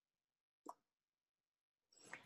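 Near silence, with one faint short click about two-thirds of a second in.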